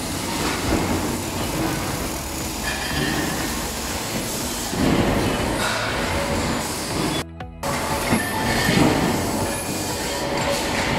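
Loud steady din of metalworking machinery on a factory floor, a dense clatter and rumble with faint metallic squeals, briefly cut off about seven seconds in.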